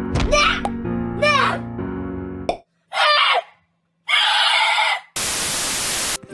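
Cartoon soundtrack: sustained musical chords with a voice crying out in short sliding wails over them, then two more brief vocal outbursts. Near the end, about a second of loud TV-static hiss.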